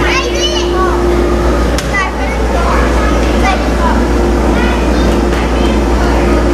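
Steady low drone and constant hum of the blower that drives an air-tube ball exhibit, with children's high voices calling over it throughout.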